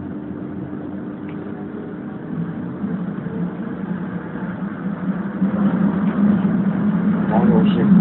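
Cabin noise inside a moving city transit vehicle: a steady motor and running hum that grows louder from about halfway through.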